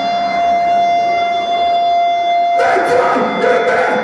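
Live heavy metal band: an electric guitar holds one steady, ringing tone through an amplifier. About two and a half seconds in, the full band crashes in with drums and cymbals.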